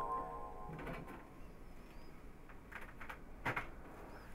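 Music with mallet percussion dies away in the first half second, then a few faint clicks and knocks as a record turntable is handled, the sharpest about three and a half seconds in.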